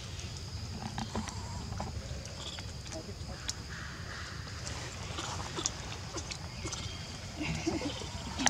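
Macaques moving and foraging among fruit peels: scattered small clicks and rustles with a few brief, soft calls, over a steady high background tone and low rumble.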